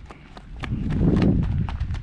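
Quick footsteps crunching on dry, gravelly dirt, a few steps a second, with a low rumble through the middle.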